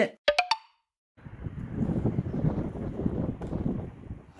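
A few short rising blips just after the start, then, after a brief silence, uneven wind buffeting the microphone outdoors.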